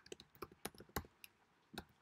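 Faint typing on a computer keyboard: a quick, irregular run of keystroke clicks, pausing briefly shortly before the end.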